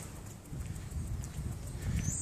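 Soft footsteps of a person walking, with a low rumble of wind or handling on a phone microphone.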